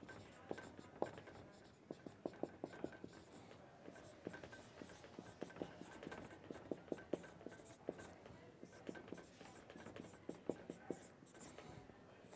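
Dry-erase marker writing on a whiteboard: a faint, irregular run of short taps and strokes as letters are printed.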